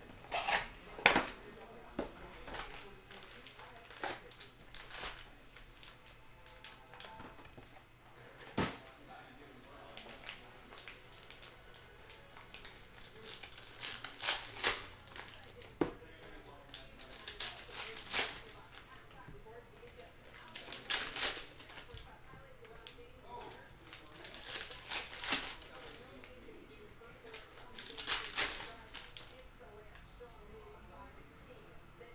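Sealed trading-card hobby boxes being handled on a table: short bursts of plastic wrap crinkling and cardboard scraping every few seconds.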